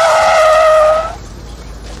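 Tyres squealing as a pickup truck brakes hard to a sudden stop: one shrill screech, sagging slightly in pitch, that cuts off about a second in. It is a film sound effect.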